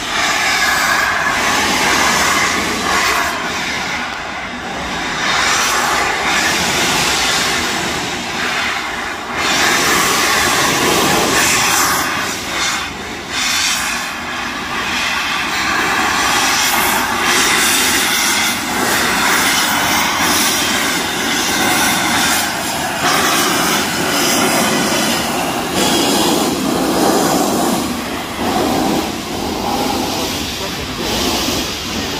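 A steam locomotive pulling a train away and passing close below, its exhaust and steam making a loud, continuous noise, with the coaches rolling past on the rails near the end.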